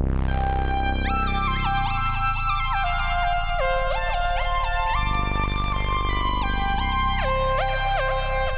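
Arturia AstroLab stage keyboard playing a synth lead preset: held bass notes changing about once a second under a busy upper melody whose notes glide into one another.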